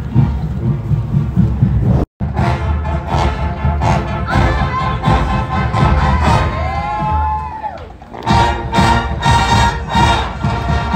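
A marching band playing outdoors, with heavy drums and held notes, mixed with a crowd shouting and cheering. The sound drops out for an instant about two seconds in, then picks up again.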